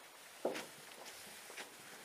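Footsteps of a player walking around a snooker table, soft steps about every half second, with one sharper, louder knock about half a second in.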